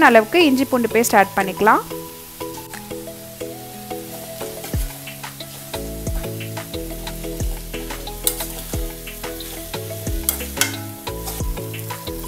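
Chopped onions and tomatoes sizzling in a stainless-steel kadai while a metal slotted spoon stirs them, clinking against the pan now and then. Background music with held notes plays throughout.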